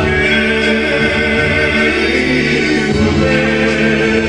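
Male a cappella vocal quartet singing into handheld microphones, holding long chords in close harmony, with the bass part moving to a new note about three seconds in.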